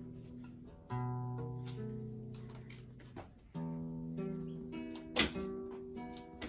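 Acoustic guitar played slowly, chords and single plucked notes each left to ring and fade, with a fresh chord about a second in and another about three and a half seconds in.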